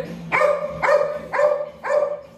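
Small dog barking four times in quick succession, about two sharp, high yaps a second.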